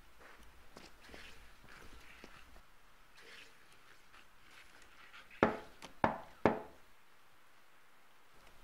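Faint shuffling movement, then three loud knocks on a door, evenly spaced about half a second apart, each ringing briefly.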